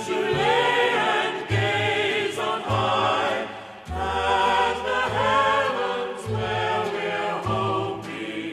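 A choir singing the record's refrain over instrumental accompaniment, with sustained, gliding voices and a bass line that moves about once a second.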